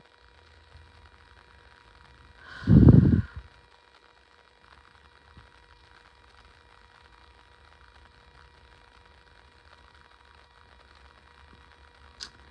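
A single loud exhaled breath, about a second long and a couple of seconds in, blowing straight onto the phone's microphone. Otherwise faint room tone with a steady low hum.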